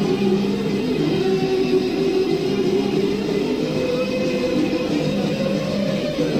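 Live anarcho-punk band playing: electric guitar, bass and drums in a continuous wall of sound with held notes, on a lo-fi live cassette recording.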